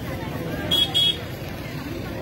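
Two short, high-pitched horn toots in quick succession, about a second in, over steady crowd chatter.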